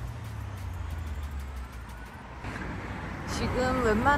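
City street traffic: car engines running with a low, steady rumble that grows louder about two and a half seconds in. A voice starts near the end.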